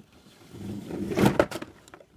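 Rustling and scraping of things being handled and moved about, building after a moment and loudest around the middle with a few sharp crackles.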